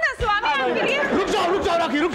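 Only speech: several voices calling out and talking over one another.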